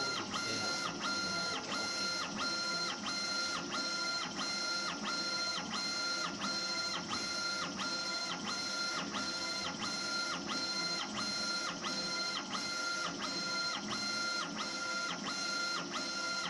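Laser engraving machine's gantry motors driving the laser head back and forth in regular raster strokes while engraving a stone tile. Each stroke is a whine that ramps up, holds and ramps down as the head speeds up, travels and stops, over a steady hiss.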